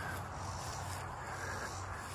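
Steady, fairly quiet outdoor background noise with a faint low hum, and no distinct events.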